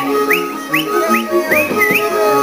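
Highland folk band of fiddles and a bass playing a dance tune, with sharp rising whistles over it: four short ones in quick succession, then a longer one near the end.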